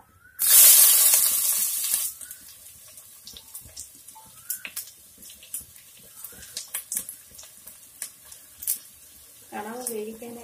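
Chopped onions tipped into hot oil in a clay pot: a loud burst of sizzling about half a second in that dies down after a second and a half, then a quieter crackle and spatter as they fry.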